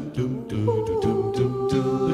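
Mixed a cappella vocal ensemble singing a wordless pop-jazz accompaniment: a pulsing sung bass line and a steady beat of vocal percussion. A held chord comes in under a second in.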